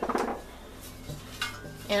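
Metal pizza pan clattering against cookware as it is picked up to cover a pot, with a quick run of clinks at the start and a couple of lighter knocks later. Between them is the quiet steady hiss of the boiling pot.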